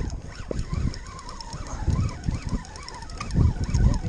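Wind buffeting the microphone in uneven low gusts on an open boat deck. A faint, thin, wavering whine rises and falls through most of the middle.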